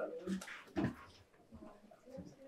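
Brief, indistinct human vocal sounds from people in a room, including one short sound falling in pitch just under a second in.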